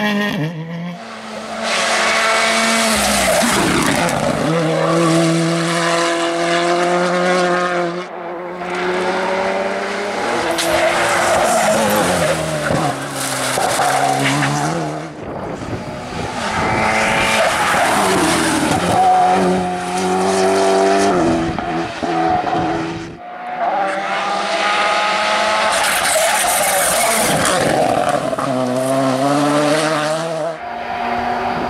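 Rally cars passing at full racing speed, one after another in about four short passes. The engines rev hard, their pitch rising and falling through gear changes, with tyre noise on the tarmac.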